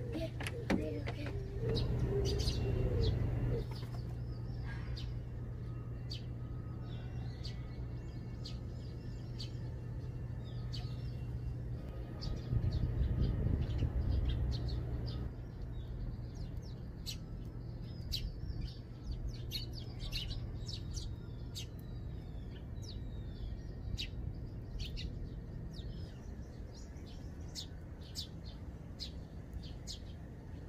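A flock of Eurasian tree sparrows chirping in short, repeated high calls while feeding, getting busier in the second half.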